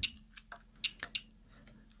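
Hands handling small LiPo battery packs and their leads on a workbench: a few short, faint clicks and rustles of plastic and wire.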